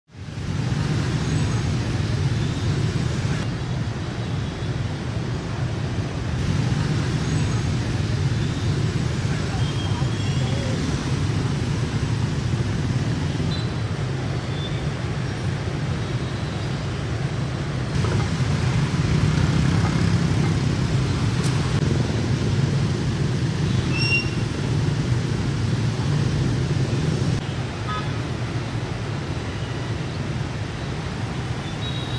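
Traffic noise from a heavily jammed city street packed with motorbikes, cars and buses: a steady low drone of engines, with a few short horn toots.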